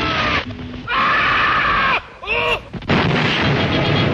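Soundtrack of an inserted black-and-white film clip: loud, noisy blasts of explosion-like rumble, each lasting about a second, with a short wavering pitched cry between them a little past the halfway point.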